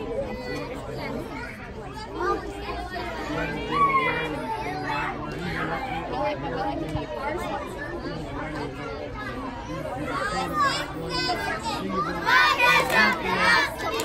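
Chatter of many overlapping voices, children's among them, with a group of children shouting loudly together near the end.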